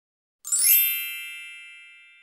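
A bright chime sound effect strikes about half a second in, many high ringing tones at once, and slowly dies away.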